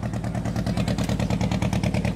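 A small engine idling, a steady rapid chugging with an even beat.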